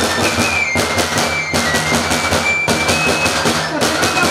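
Romanian folk-troupe music: large frame drums beaten in a fast, steady beat, with a high piping melody of short notes above them.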